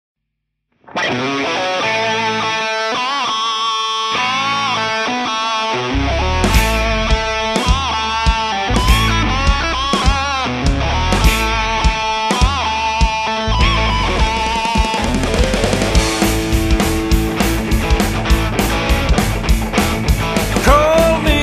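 A rock band playing a blues-rock instrumental intro. An electric guitar starts alone about a second in, and bass and drums join at about six seconds. The drumming gets busier near the end.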